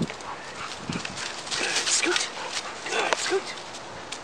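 A dog giving several short, pitched whines and yelps, over the crackle and scuffle of paws and feet on dry fallen leaves.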